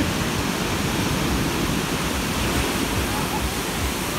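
Ocean surf breaking on a sandy beach, a steady wash of noise.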